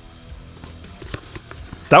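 Small cardboard box being opened and handled: faint rustling and scraping of card with a few light clicks and taps.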